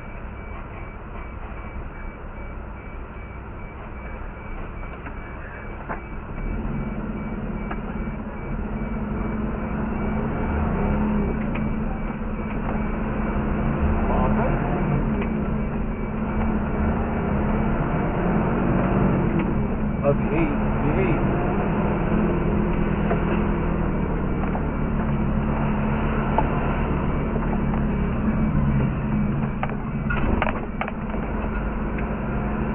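A fire engine's diesel engine idling, then throttling up about six seconds in as the truck pulls away. Its running note rises and stays louder while it drives.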